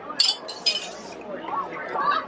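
Plastic toss rings striking glass bottles in a ring-toss game: two bright clinks about half a second apart, each ringing briefly.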